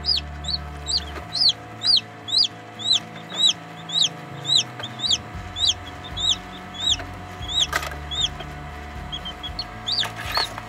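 Newly hatched chicken chicks peeping loudly: a steady string of high, arched peeps about two a second, thinning to softer, shorter chirps near the end.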